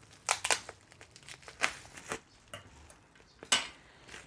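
A plastic bag wrapped around a cordless trimmer battery crinkling as it is handled, in a few short, separate rustles, the loudest near the end.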